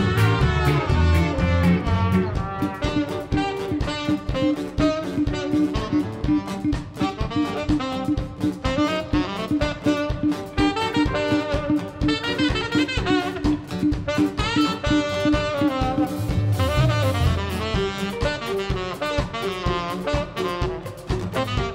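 A live band playing an instrumental passage of upbeat ska-style music: trumpet and saxophone play the melody over a steady drum beat and guitars. The deep bass notes drop out about two seconds in and return near the end.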